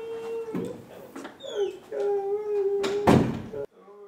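A woman sobbing in long, wavering wailing cries. About three seconds in, a door slams once, loudly, and the sound then cuts off abruptly.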